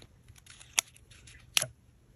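Two sharp clicks, about a second apart, with a few faint ticks, as the cardboard box of the light set and its packaging are handled by hand.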